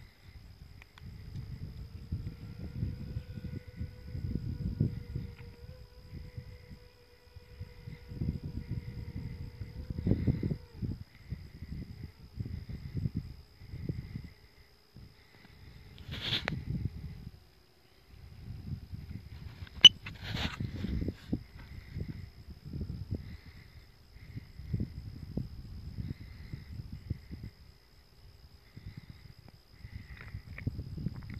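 Wind buffeting the microphone outdoors in irregular low rumbling gusts a few seconds long, with a faint steady high whine underneath and one sharp click about twenty seconds in.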